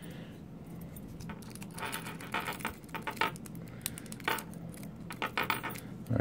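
Light metallic clinks and scrapes of steel lock picks and a tension tool against a laminated steel padlock as they are handled. The sounds come in a few short bursts through the middle and near the end.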